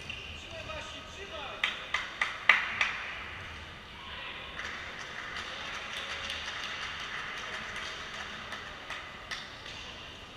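Badminton rally: a rapid string of sharp racket hits on the shuttlecock, five or six in about a second and a half, the loudest halfway through. Then voices and steady hall noise, with one more sharp hit near the end.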